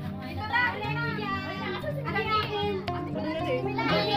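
Background music with steady held notes, under the excited, high-pitched voices of several people calling out over one another.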